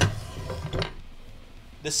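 Axis Longboard bass drum pedal, a metal pedal, being picked up and handled on a wooden table: a sharp knock right at the start, then about a second of rubbing and scraping with small clicks.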